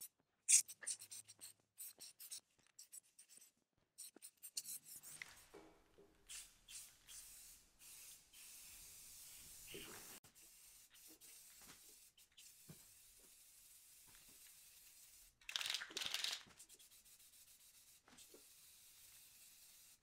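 Aerosol spray paint can hissing in many short spurts, then one longer spray of about a second late on.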